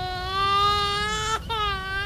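A long wailing cry held at one pitch, breaking off after about a second and a half, then resuming briefly and falling away: a crying sound effect.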